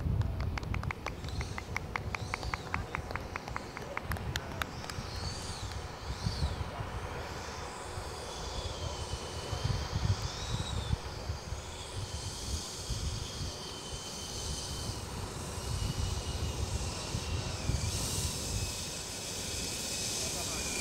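The Schubeler 120 mm electric ducted fan of an Avanti XS RC jet whining at low throttle while taxiing, its pitch wavering up and down and sinking lower near the end. A rapid, even ticking sounds in the first few seconds, over a low, gusty rumble.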